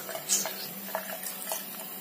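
Light, irregular scraping and clicking of a child's toothbrush as a toddler brushes and knocks it about, over a faint steady hum.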